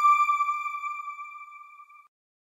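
A single electronic chime from an outro logo sting, one clear ping whose ring dies away steadily to nothing near the end.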